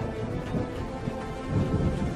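Music with a thunderstorm sound effect laid over it: thunder and rain, the thunder swelling near the end.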